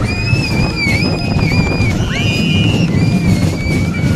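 Kiddie roller coaster in motion: a steady low rumble with long, high-pitched squeals over it that bend in pitch and waver, one breaking off about two seconds in and another starting right after.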